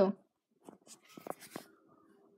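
The last syllable of a spoken phrase, then faint, scattered clicks and taps of a tablet being handled. A faint, steady, low hum comes in a little past halfway.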